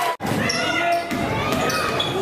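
Sounds of an indoor basketball game: many spectators' voices and shouts echoing in a gym, with a basketball bouncing on the hardwood floor. The sound drops out for an instant just after the start.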